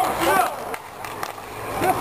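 Roller hockey play on an outdoor rink: inline skate wheels rolling on the hard surface, with two sharp stick-and-puck clacks in the middle and short shouts from players at the start and near the end.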